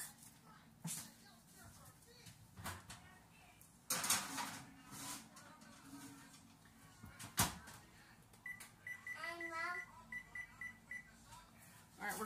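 Oven door opened and a cookie sheet put in, with handling clatter, then the door shut with a sharp clack about seven seconds in. This is followed by a run of short electronic beeps at one pitch as a 10-minute timer is keyed in.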